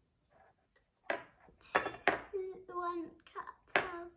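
A young girl's voice speaking or vocalising without clear words, starting about a second in.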